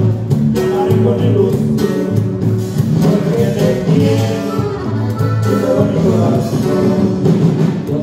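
A live band playing Latin dance music with a prominent, rhythmic bass line.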